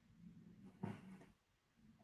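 Near silence of a video-call line, with one faint, brief sound a little under a second in.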